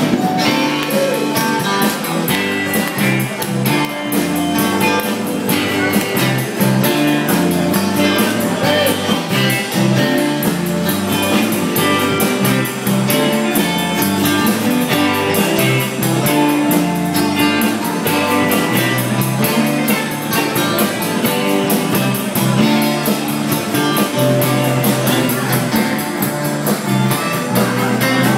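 Live rock band playing an instrumental jam: electric and acoustic guitars over a steady beat, recorded raw on a phone.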